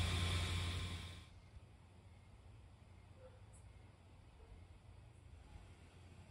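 Steady low hum and hiss of an inflatable Santa's blower fan running, fading out about a second in and leaving near silence.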